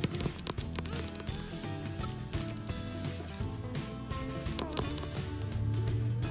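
Background music with held notes and light percussive taps.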